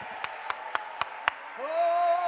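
Hand clapping in a steady rhythm: five sharp claps, about four a second. Near the end a man's long held shout begins.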